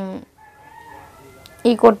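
A faint, drawn-out bird call lasting about a second, heard in a gap between stretches of a woman's speech.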